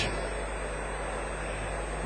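Steady low hum and hiss of the room tone in a hall full of people.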